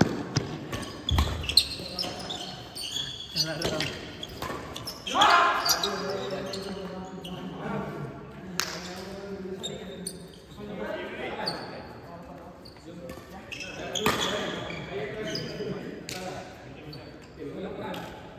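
Badminton doubles rally: sharp racket strikes on the shuttlecock at irregular intervals, with high rising squeaks and players' voices calling out, echoing in a large indoor hall.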